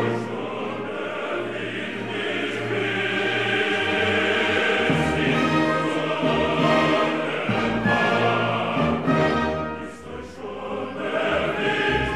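Male chorus singing held chords with orchestra in a Romantic choral cantata, the sound dropping back briefly about ten seconds in before swelling again.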